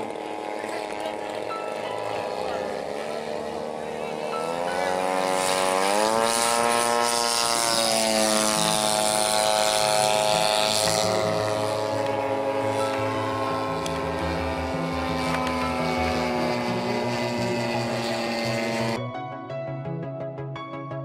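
Giant-scale radio-control model plane's engine and propeller rising in pitch as it throttles up for the takeoff run, then holding a steady high drone as the plane flies.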